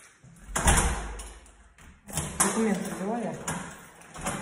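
A front door slamming shut once, about half a second in, with a heavy thud that dies away over about a second.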